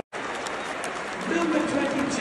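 Football stadium crowd noise, a steady mix of chatter and clapping, after a brief dropout at the very start; a man's voice comes up over it about halfway in.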